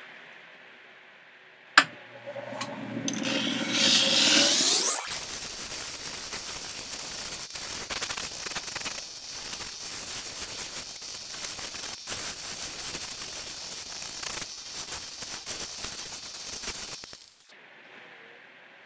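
A stone being ground and polished on the wet 1200-grit wheel of a six-wheel combination lapidary cabbing machine. A whir rises in pitch for a few seconds, then the stone makes a steady rasping hiss against the spinning wheel, which cuts off abruptly near the end.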